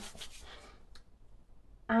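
Hands rubbing together with lip scrub on the skin: a soft rustling that fades out within the first second, with one faint click about a second in.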